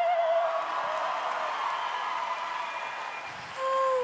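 A woman's held sung note with vibrato ends about half a second in. It gives way to a few seconds of audience cheering and applause. Near the end she starts singing again on a steady note.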